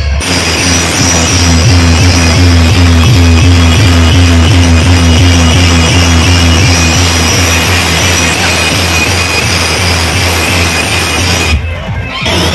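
Very loud electronic dance music blasting from a truck-mounted DJ sound system, with a heavy sustained bass line under an evenly repeating beat; it dips briefly near the end.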